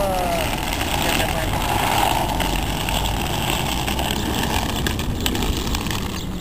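Inline skate wheels rolling on rough asphalt: a steady rolling hiss and rumble, with a few brief falling squeaks at the very start.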